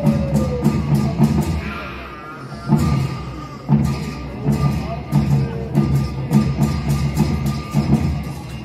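Tibetan opera (Ache Lhamo) drum and cymbals playing a steady dance beat. The beat breaks off briefly about two seconds in, then picks up again.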